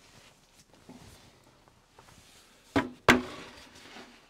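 Two wooden knocks near the end, about a third of a second apart, the second the louder: a wooden platform carrying a hinge boring jig being set down on a drill press table. Faint handling rustles come before them.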